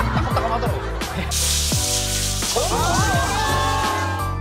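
Background music with a steady bass line; about a second in, a handheld shower head starts spraying water, hissing for about two seconds as bleach is rinsed from hair.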